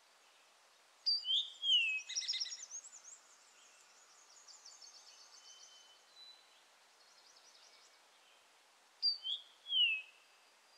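Woodland songbirds singing. A loud, clear phrase of a few slurred falling notes comes about a second in and again near the end, and a quick trill follows the first one. Fainter trills run in between over a steady forest hiss.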